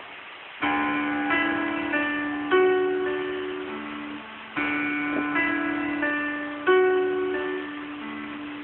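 Piano keyboard playing a short melody of E, D, F sharp, D, A over a held D in the bass, the phrase played twice.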